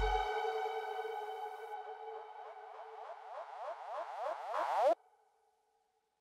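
The closing tail of a dubstep/hardstyle electronic track. The bass drops out at once and a held synth tone fades away. Then a fast run of short rising synth sweeps builds in loudness and cuts off suddenly about five seconds in.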